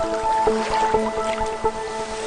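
Electronic music from a mixed progressive house and breaks DJ set: a melody of held synth notes stepping between pitches over short, sharp percussive clicks.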